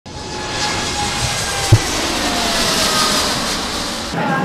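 Jet airliner's turbofan engines at takeoff power as a Boeing 787 lifts off, a steady rushing noise with a faint falling whine. A single sharp low thump comes a little under two seconds in.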